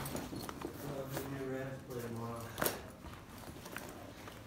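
A man's voice, low and indistinct, while a fabric equipment bag is handled and folded, with one sharp click about two and a half seconds in.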